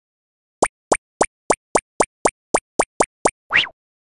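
Cartoon pop sound effects in an animated intro: eleven quick plops in a row, about four a second, then a short rising swoop near the end.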